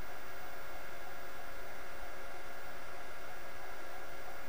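Steady background hiss with a faint, even hum, unchanging throughout: the open microphone's noise floor between spoken lines.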